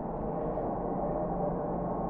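A steady background hum with faint held tones and no distinct event.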